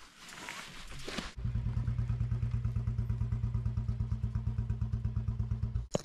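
A motorcycle engine running at idle close by, a steady even pulsing of about ten beats a second, after a brief rush of noise. It comes in suddenly about a second and a half in and cuts off abruptly near the end.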